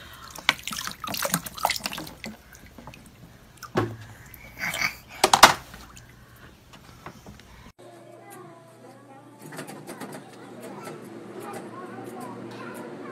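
A toddler's feet splashing in the shallow water of a plastic kiddie pool, in uneven bursts, loudest about four and five seconds in. About two-thirds of the way through, the sound cuts abruptly to a quieter, steady background.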